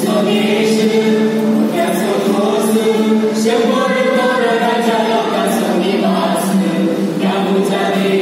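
Small mixed vocal group singing in harmony, holding long chords that change every couple of seconds.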